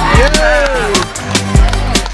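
Basketball sneakers squeaking on a hardwood court, a long squeak through the first second among shorter ones, with short knocks of feet and ball, over music with a steady bass.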